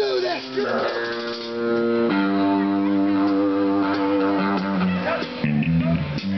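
Amateur rock band playing live through amplifiers: electric guitar notes held and ringing out, then about five and a half seconds in a rhythmic riff of low notes starts.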